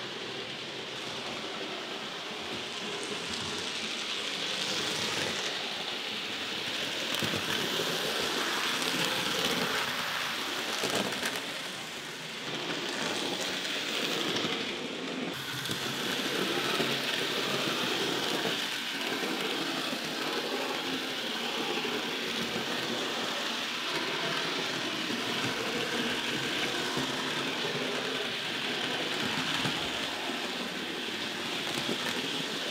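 Hornby and Bachmann OO gauge model locomotives of Henry running around the layout's track: a steady hiss of the motors and wheels on the rails.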